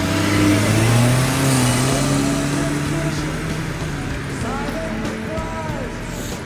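A car accelerating away, its engine pitch rising over the first second or two and then levelling off, over general road traffic noise.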